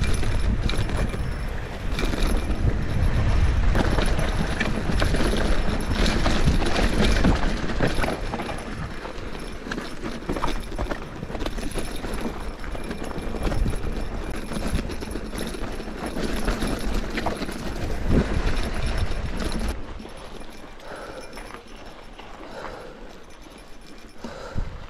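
Giant Trance Advanced Pro 29 mountain bike rattling and clattering over a rough dirt trail, tyres crunching on rock and gravel, with wind buffeting the microphone. Loudest over the first eight seconds, softer after that.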